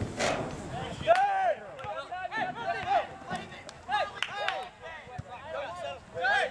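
People's voices calling out on the field, a series of short raised calls and shouts with pauses between them, starting about a second in. A brief burst of noise comes right at the start.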